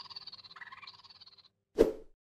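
The fading tail of an intro jingle dies away over about a second and a half, followed by a short, sharp sound-effect hit near the end as the title card changes.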